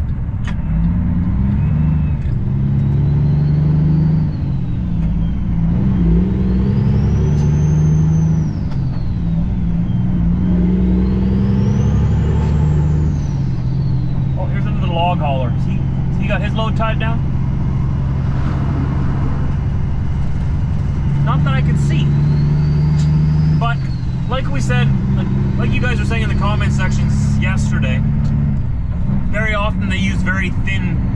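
Heavy diesel engine of a loaded Kenworth W900L semi truck heard from inside the cab, pulling up through the gears: its pitch climbs and drops with each shift, with a high whistle that rises and falls over every gear, then runs steadier at road speed.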